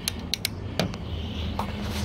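A few sharp plastic clicks in the first second, over a low steady rumble: a digital multimeter being handled, its test leads and rotary dial switched from the 10 A current range toward volts.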